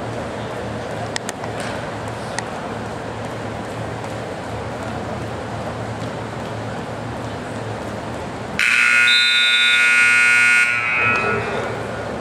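Electric scoreboard buzzer sounding once, a steady harsh buzz lasting about two seconds that starts late and cuts off abruptly, marking the end of a wrestling period. Low gym crowd murmur runs underneath.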